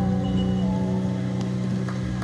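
An acoustic guitar's last chord ringing out and fading at the end of a song, over a steady low hum.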